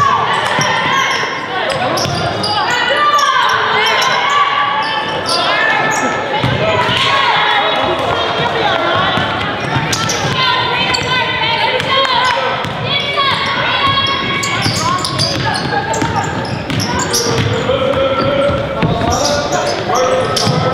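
A basketball dribbled on a hardwood gym floor, with repeated short bounces, under voices of players and spectators calling out in the gymnasium.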